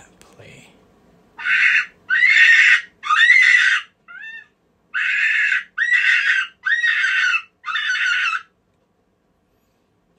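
Lucky Duck Super Revolt electronic predator caller playing its "Silly Rabbit" rabbit distress call through its speaker. It gives seven loud squeals in a row, each under a second long and about a second apart, with one short faint squeal among them.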